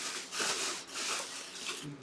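Clear plastic bag crinkling and rustling irregularly as a full-size football helmet inside it is handled and lifted.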